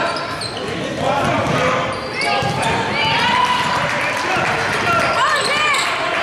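Basketball sneakers squeaking on a gym floor during play, many short squeaks one after another, with a basketball bouncing.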